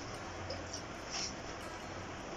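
Faint soft rustling of a hand mixing dry flour and other powdered ingredients in a bowl, over a low steady hum.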